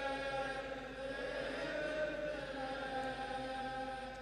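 Men's voices chanting a mourning lament verse together in a slow, drawn-out melody, faint and steady.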